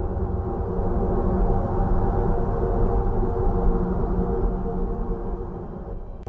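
Jupiter's electromagnetic emissions recorded by a spacecraft and converted into audible sound: a steady, low, noisy drone with faint held tones above it, slightly louder through the middle.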